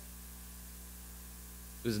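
Steady low electrical mains hum. A man's voice starts speaking near the end.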